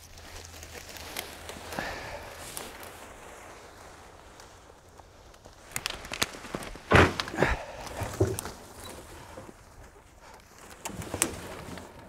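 Cut brush and leafy branches rustling, crackling and scraping as they are gathered up, dragged over grass and heaved onto a trailer, with footsteps. The loudest crackle of branches comes about seven seconds in.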